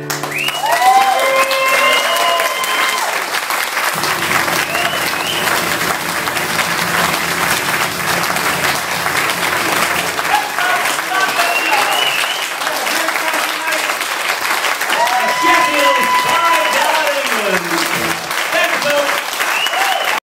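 Small club audience applauding and cheering at the end of a song, with whooping shouts about a second in and again in the last few seconds.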